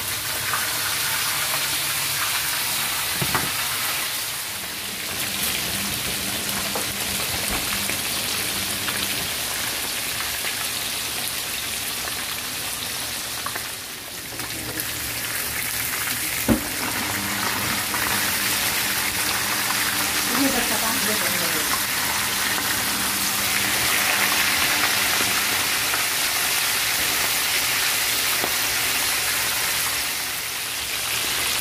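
Flour-dusted fish pieces deep-frying in a pan of hot oil: a steady hiss, with a single sharp knock about halfway through.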